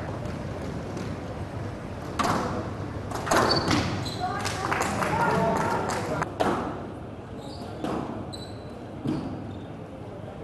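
Squash ball being hit with rackets and against the court walls: a string of sharp, irregular impacts, busiest in the middle stretch.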